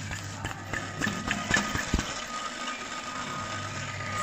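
Bosch alternator, off the car, making a scratchy rattle with a few sharp clicks in the first two seconds, over a steady hum. This is the scratching noise that was traced to the alternator.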